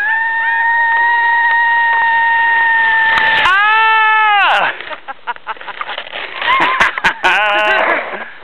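A long, high-pitched held squeal of delight from a sled rider, about three and a half seconds of one steady note, then a shorter, lower cry that falls away. Scattered knocks and scrapes follow as the sled slows, with a short burst of laughter near the end.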